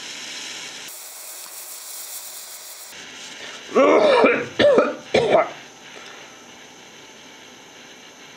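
Small gas torch flame hissing steadily as it heats a solder joint fluxed with phosphoric acid, the hiss louder for about two seconds near the start. A man coughs and clears his throat about four to five seconds in.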